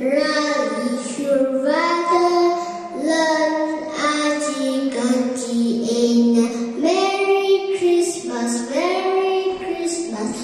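A young girl singing solo into a microphone, holding one note after another with short breaks between phrases and sliding up into some of the notes.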